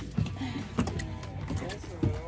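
Indistinct voices over a steady low hum, with a couple of short knocks.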